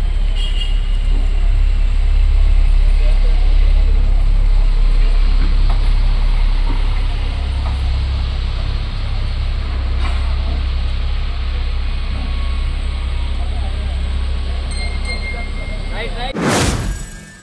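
Local passenger train running in at a station platform: a steady, loud low rumble with rail and wheel noise.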